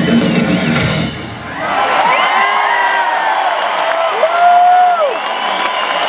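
A rock band with distorted electric guitar and drums plays loudly and stops about a second in. Then the arena crowd cheers, with many long shouts that rise and fall in pitch.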